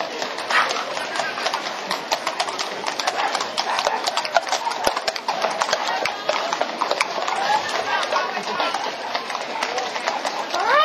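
Hooves of several ridden horses clip-clopping on a paved street at a walk, a steady run of sharp clicks, with crowd voices around them.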